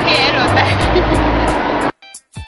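Loud cafe ambience: background music and people's voices over steady noise, cut off abruptly just before the end.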